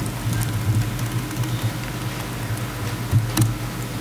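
Light keystrokes on a laptop keyboard with a clearer key tap near the end, over a steady low hum.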